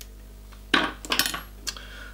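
A few quick, sharp metallic clinks from a pair of fly-tying scissors, bunched together about a second in, with one more shortly after.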